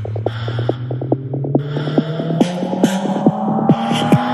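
Electronic trance music build-up: a synth tone rising steadily in pitch under fast, evenly pulsing synth bass stabs, with bursts of hiss above, growing slightly louder.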